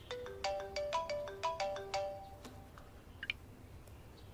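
Mobile phone ringtone: a quick melody of short chiming notes that plays for about two and a half seconds, then stops.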